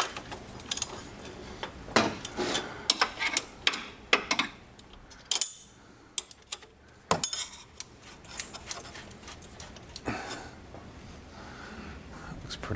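Scattered sharp metallic clinks and taps as a factory exhaust tip and its clamp are slid onto and adjusted on the tailpipe of a Porsche 718 GT4's race exhaust, with a short quiet pause midway.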